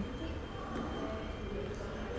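Steady low background noise with a faint hum, no distinct event.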